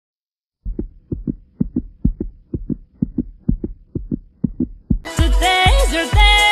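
Heartbeat sound effect: paired low thumps, lub-dub, about two beats a second, starting after a brief silence. About five seconds in, loud music comes in with a heavy bass beat.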